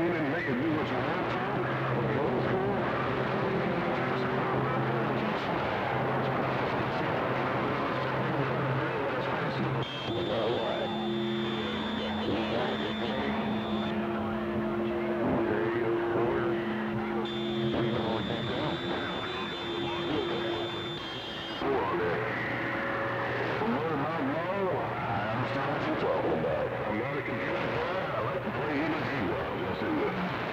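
CB radio on channel 6 receiving band noise through its speaker: a steady hiss and crackle with several droning heterodyne tones from overlapping carriers, mixed with faint, unintelligible distant voices. The tones shift about ten seconds in and again near twenty-two seconds.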